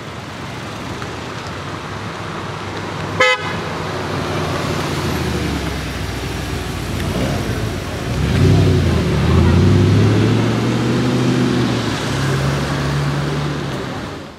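A white first-generation Audi R8 rolling through traffic; about eight seconds in its engine gets louder and the note rises and falls for a few seconds as it pulls away. A short car horn toot sounds about three seconds in.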